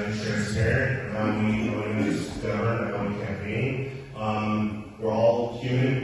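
A man speaking in a low voice, the words hard to make out.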